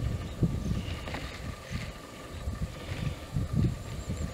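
Wind buffeting the microphone: a low rumble that comes and goes in irregular gusts.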